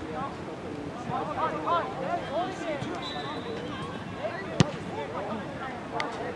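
Distant shouting voices of players and spectators across an outdoor soccer field, with one sharp thump a little past halfway: a soccer ball being kicked.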